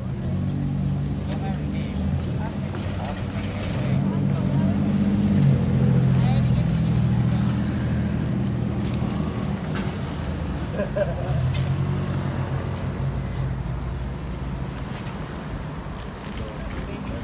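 Engine of a motor vehicle in the street close by, a low steady drone that builds over the first five or six seconds and then slowly fades.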